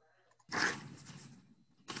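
A sudden rush of noise on a video-call microphone about half a second in, fading away over about a second, followed near the end by the start of a spoken word.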